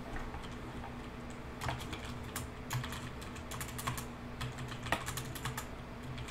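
Typing on a computer keyboard: quiet, irregular keystroke clicks, picking up about a second and a half in, over a faint steady hum.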